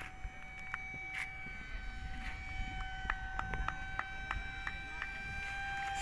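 Steady high-pitched whine of RC model airplane motors in flight, holding one even pitch, with a run of faint clicks through the middle.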